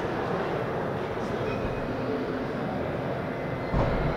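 Steady low rumbling background noise of a large indoor hall, with a single thump near the end.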